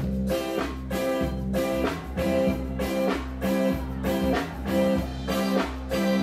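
Live band kicking in with a song: electric guitar chords struck in a steady rhythm, about two a second, over a sustained bass line.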